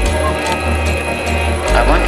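Hardstyle electronic dance track: a fast run of clicks, about five a second, over held synth chords while the deepest bass drops out. The deep bass comes back in near the end.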